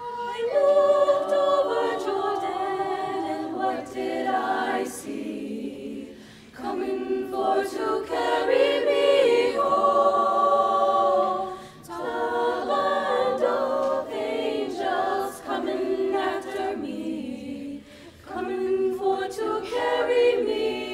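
Women's vocal ensemble singing a cappella in several-part harmony, in phrases broken by brief pauses about every six seconds.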